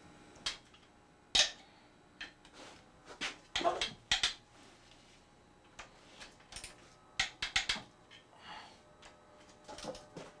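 Box-end wrench clicking and clinking on the small case nuts and studs of a VW Type 1 engine case as the nuts are worked loose. Scattered sharp metallic clicks, one standing out about a second and a half in, with quick clusters around four seconds and again past seven.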